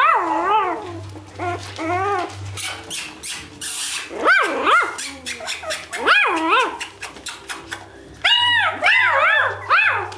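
Three-week-old beagle puppies whining and yelping: short high cries that rise and fall in pitch, coming in clusters of two or three at a time.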